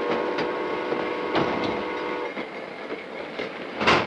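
Train horn sounding a steady chord for about two seconds over the clickety-clack of wheels on rail joints, with a loud knock near the end.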